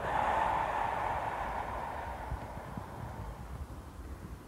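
A long, breathy out-breath, as in a qi gong exhalation, starting suddenly and fading away over about three seconds as the arms are lowered.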